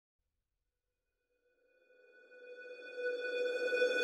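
A single steady electronic tone fading in from silence about two seconds in and growing steadily louder.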